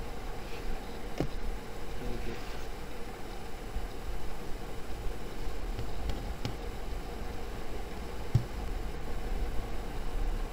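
Steady background noise of a low rumble and hiss with a faint hum, broken by a few soft clicks about a second in, past six seconds and near eight and a half seconds.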